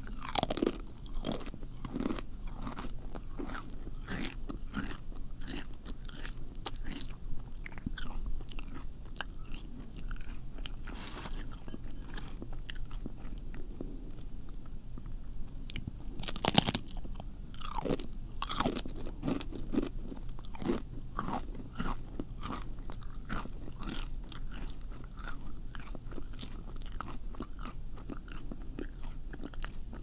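Close-miked crunchy eating sounds for ASMR: bites and chewing, a dense run of crisp crackles and clicks, with louder crunches about half a second in and again around sixteen seconds in.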